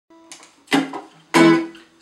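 Ukulele: a faint pluck, then two strummed chords a little over half a second apart, each left to ring and fade.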